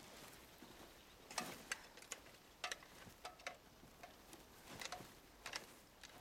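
Faint footsteps of several people walking over twigs and dead leaves on a woodland floor: a dozen or so small irregular snaps and crackles.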